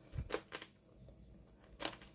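Faint crunches of someone chewing a crispy breaded, oven-baked chicken foot: a few short, sharp cracks, the last near the end.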